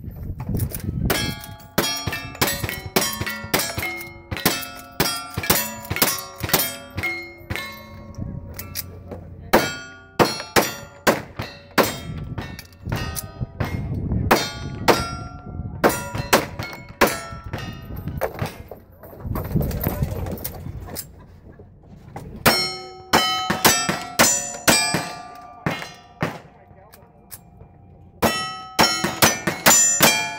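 Rapid gunshots, each followed by the ringing clang of a hit steel target. The shots come in quick strings broken by two short pauses, one about two-thirds of the way through and one near the end. In the later strings a 1911-style semi-automatic pistol is firing.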